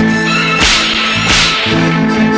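Instrumental interlude of a 1960s Tamil film song: the orchestra holds steady notes, cut by two sharp, swishing percussive hits about two-thirds of a second apart.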